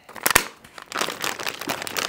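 Plastic water bottle crinkling and crackling as it is handled: two sharp clicks near the start, then a dense run of crinkles through the rest.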